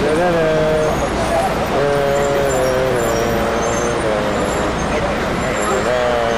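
Street traffic with a steady pitched engine drone from a large vehicle, such as a bus, in the first second and again for a few seconds mid-way, over a continuous low rumble.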